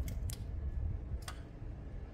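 Two light clicks about a second apart from hand tools working on the motorcycle's engine underside, over a low steady outdoor rumble.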